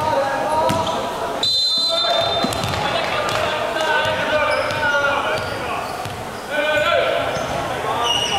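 A volleyball bounced on a wooden sports-hall floor by the server preparing to serve, with voices chattering around the hall. A referee's whistle blows briefly about a second and a half in, signalling the serve.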